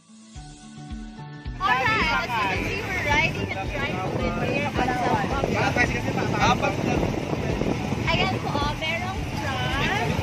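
A ride in a motorcycle tricycle: a steady engine and road rumble starts after a quiet first second or two, under the voices of passengers talking and shouting, with music mixed in.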